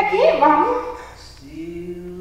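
A woman's wordless vocal cry, loudest in the first half-second, over a steady low held note.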